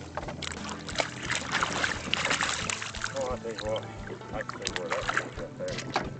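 Water splashing as a hooked rainbow trout thrashes at the surface and is lifted out by hand beside the boat. A muffled voice is heard partway through.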